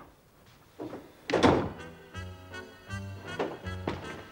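A door shuts with a thunk about a second and a half in. Background music then starts, with short repeated bass notes under sustained tones.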